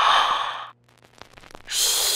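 A person's loud breathy exhale, like a sigh, lasting under a second, then about a second later a longer, higher hissing breath that fades slowly.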